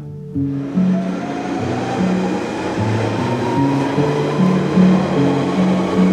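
Background music with a steady bass pattern over the rushing noise of an Underground train passing a platform, with a faint rising whine in the first few seconds.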